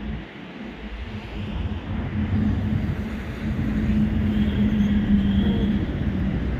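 A passing vehicle: a steady low rumble with a humming tone that swells louder over the last few seconds as it comes closer.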